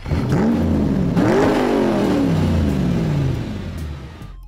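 A car engine revving: its pitch climbs for about a second and a half, then falls away steadily over the next two seconds and fades.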